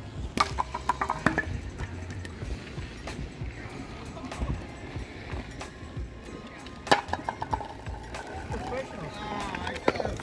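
Curling stones sliding on outdoor ice with a low rumble, and a few sharp clacks as stones strike pegs or other stones. People's voices can be heard in the background.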